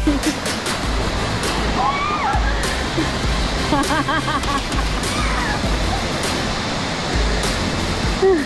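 Waterfall rushing steadily over a rock ledge into a shallow pool, a dense continuous roar of water. Background music with a steady electronic beat plays over it, and a few brief voices come through.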